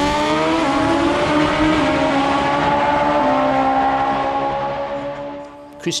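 Top Fuel drag motorcycles running flat out down the strip, a loud engine note whose pitch steps down a few times at the gear changes. The sound fades as the bikes get farther away near the end.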